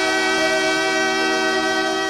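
A band with horns holding one long sustained chord, the closing chord of a Thai pop song.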